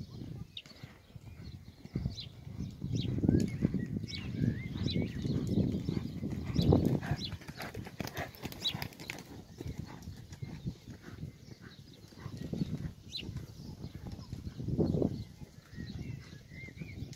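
A show-jumping pony's hoofbeats on a sand arena as it is ridden, coming in uneven bursts of dull thuds that swell and fade.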